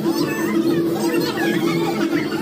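Children's voices and chatter over a steady low hum.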